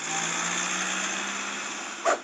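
Cartoon sound effect of a small motor running steadily: a low hum under a loud hiss, stopping sharply at the end.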